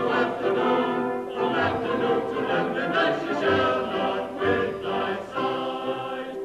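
Operetta chorus singing with a live pit orchestra: full held chords that change about once a second.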